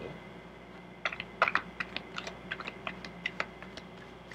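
A deck of cards being shuffled by hand: a run of quick, irregular clicks and taps as the cards slide and strike against each other, starting about a second in.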